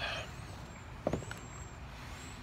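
Steady low rumble of distant road traffic in outdoor background noise, with one short soft knock about a second in.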